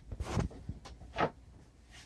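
Toy handling noise: brief rustles and light knocks as a fashion doll and its bedding are moved about on a plastic dollhouse bed. There are two short bursts, one right at the start and a smaller one a little past the middle.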